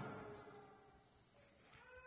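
Near silence in a pause between sentences of a sermon: the preacher's voice dies away in the church's reverberation, and a faint pitched sound rises in pitch near the end.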